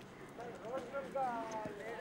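People talking nearby, their words unclear, with one voice drawn out in a long rising and falling tone in the middle.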